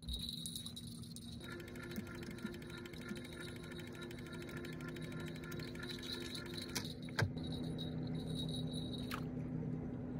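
Boat's outboard motor running steadily at trolling speed, with a sharp click about seven seconds in and another near nine seconds.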